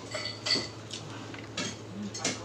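Crisp fried food being handled and eaten by hand: a few short crackles and clicks, the sharpest about half a second in with a brief light clink.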